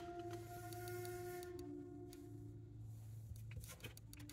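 Faint soft ambient background music: a sustained drone of held tones that shifts to a lower note about halfway through.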